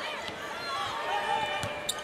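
Basketball game sound on a hardwood court: crowd murmur, sneakers squeaking in short high chirps, and a ball being dribbled with a few sharp bounces.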